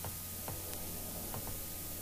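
A few light clicks from a Mazda Miata's manual gear lever being moved side to side in neutral, over a steady low hum.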